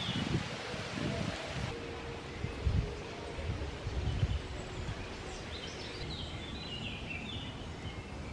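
Outdoor ambience of wind rumbling on the microphone and leaves rustling, strongest in the first half. From about the middle on, a small songbird sings quick, high, descending twittering phrases.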